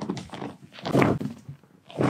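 Chiropractic side-lying spinal adjustment: a sudden thrust about a second in, with a thunk and the crack of the back joints releasing, among smaller knocks.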